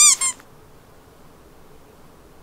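A yellow rubber squeak toy crushed under a boot, giving two quick high squeaks right at the start.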